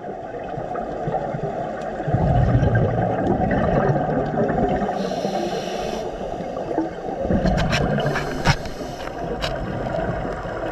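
Underwater ambience heard through a dive camera: a steady muffled rush of water with scuba divers' exhaled bubbles. Two louder bubbling rumbles come about two seconds in and again near eight seconds, with a few sharp clicks around the second one.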